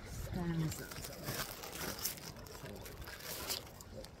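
Dry grass stems crackling and rustling right against a phone's microphone as the phone is handled and set down in the grass, with irregular crackles throughout. A brief murmur of voice comes just under a second in.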